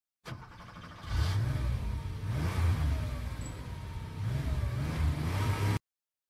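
A car engine accelerating, growing louder about a second in, its pitch climbing twice, then cutting off suddenly near the end.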